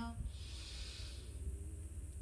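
A woman's deep inhale, lasting about a second, over a steady low rumble of wind on the microphone.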